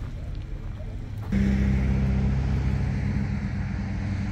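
Low outdoor rumble, then a little over a second in an abrupt switch to the steady drone of a motor vehicle engine running.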